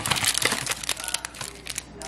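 Small cardboard snack box being handled open and a crimp-sealed wrapped bar pulled out of it: a dense run of crackling and crinkling from the cardboard and the wrapper.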